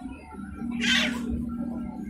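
A child's short high-pitched squeal about a second in, over background music with a held low note.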